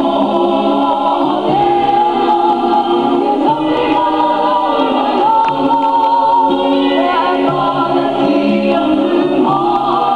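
A large mixed group of family voices singing a Samoan vi'i (song of praise) together in harmony, holding long notes.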